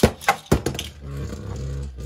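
A Beyblade Burst top landing in a clear plastic stadium just after launch: a few sharp clicks in the first second as it hits and skitters, then a steady whir as it spins.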